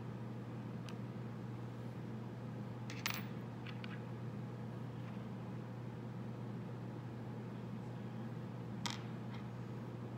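Steady low room hum from a fan, with a few light taps and clicks of clay tools against the wooden work table, the clearest about three seconds in and another near the end.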